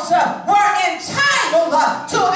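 Speech only: a woman preaching a sermon, her voice steady and continuous through the moment.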